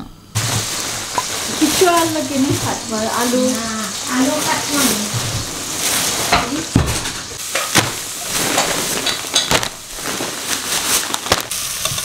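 Sliced onions sizzling as they fry in oil in a steel pot, a steady hiss, with a metal spoon stirring them. Several sharp knocks and clatters stand out over it.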